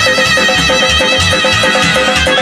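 Live Azerbaijani dance tune (oyun havası) led by clarinet, with guitar and frame drum. A high, held, ornamented clarinet melody runs over quick repeated guitar notes and a steady drum beat.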